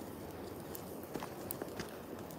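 Footsteps on loose river gravel and stones: a few sharp, irregular clicks over a steady background hiss.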